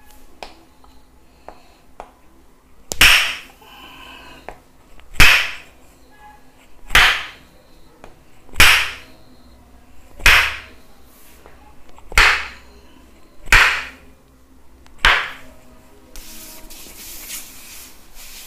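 Tok sen massage: a wooden hammer striking a wooden stake held against a person's back, eight sharp wooden knocks at an even pace of roughly one every two seconds.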